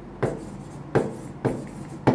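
Writing on a blackboard: three short strokes, a little over half a second apart, as a word is written out.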